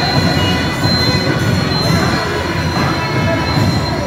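Loud, busy temple-festival crowd noise with voices, over several steady high ringing tones that hold throughout.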